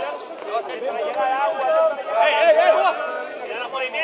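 Several people shouting and calling over one another during play, loudest and most crowded about two to three seconds in.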